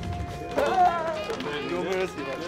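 Background music with people's voices talking over it from about half a second in, as they greet one another; no words come through clearly.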